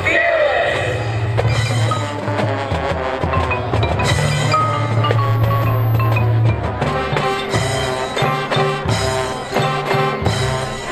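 Marching band playing its halftime show: mallet percussion rings over long-held low notes, and the low part breaks into shorter separate hits a little past halfway.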